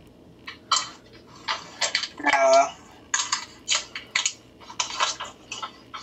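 Handling sounds of a small mini figure being turned in the fingers: short scattered rustles and clicks, with a brief murmured voice about two and a half seconds in.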